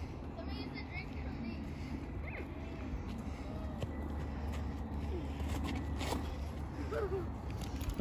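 Faint, distant voices of children calling out now and then over a steady low outdoor rumble.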